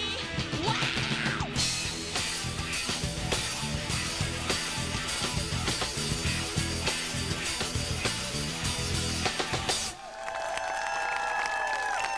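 Pop-rock band playing live: electric guitars, bass and drum kit driving a steady beat. About ten seconds in the drums and bass stop, leaving a few held notes ringing as the song ends.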